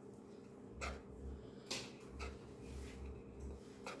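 Kitchen knife slicing red bell pepper on a wooden cutting board: a few faint knocks of the blade on the board, unevenly spaced.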